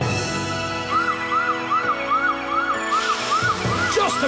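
Cartoon emergency siren, a quick rising-and-falling wail repeating about three times a second, starting about a second in over a music track. A hiss joins in near the end.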